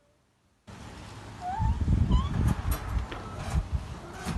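Near silence for the first half second or so, then rustling, thumps and clicks of hands working in and around a wire crate, with a few short rising squeaky calls about one and a half to two seconds in.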